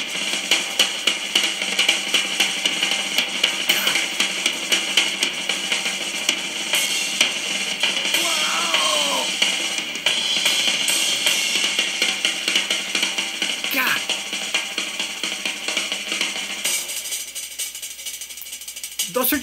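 Old live recording of a rock drum solo: fast, dense strokes around the drum kit with accents and cymbal, sounding thin with little low end.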